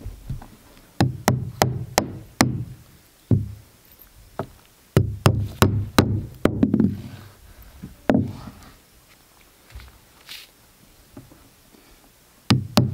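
Drywall hammer driving hand nails through synthetic roof underlayment into an OSB roof deck. There are two quick runs of sharp strikes, about five blows each, and one more blow a little later.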